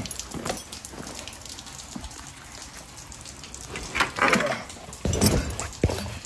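Steady rain falling, with rustling and knocking as rope rigging bags are shifted by hand. There are two louder short noises in the second half, the last ending in a sharp knock.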